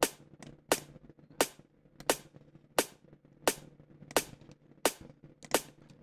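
Soloed snare drum sample from a drum and bass track, playing the backbeat alone: nine short, crisp hits evenly spaced about 0.7 seconds apart.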